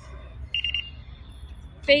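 Mobike bike-share smart lock giving one short, high electronic beep about half a second in, the signal that the bike has been unlocked.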